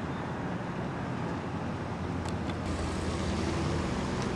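Outdoor street noise with a motor vehicle's low engine rumble, growing louder in the second half.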